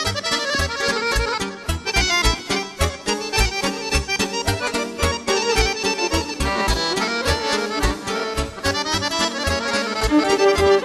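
Instrumental passage of a Balkan folk song: a fast accordion melody over a steady low bass-and-drum beat, with no singing.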